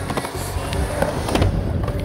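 Skateboard wheels rolling on a smooth skatepark surface, with a few sharp knocks of the board about a second and a second and a half in, over background pop music.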